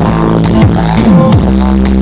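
Music played loud through a CM 9940 PRO speaker, heavy on the bass, with deep bass notes that slide downward in pitch again and again.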